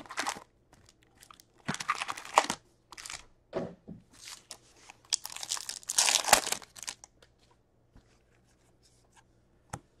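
Plastic wrappers of Upper Deck hockey card packs crinkling in short bursts as packs are handled from the box, then one pack wrapper being torn open with a longer, louder crackling rip about five to seven seconds in.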